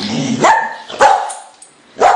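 A dog barking: sharp barks about half a second apart.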